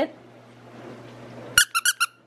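Squeaky plush lamb dog toy squeezed four times in quick succession near the end, giving short, high squeaks, over a faint steady hum.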